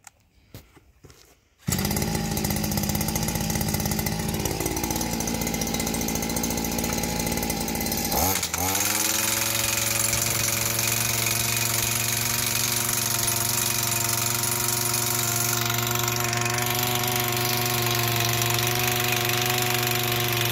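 Messer JH-70 two-stroke petrol post driver hammering a 40×40 steel pipe into the ground with its large, spring-loaded striker attachment. It starts suddenly a little under two seconds in. About eight seconds in, its pitch dips and rises, then it runs on steadily at a higher, even tone.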